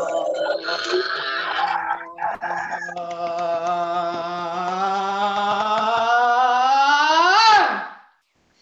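Human voices in a vocal range exercise. At first several voices sound together, then one voice holds a long, steady tone low down that climbs slowly and sweeps up steeply to a high pitch near the end before it breaks off, a slide from the lowest to the highest note.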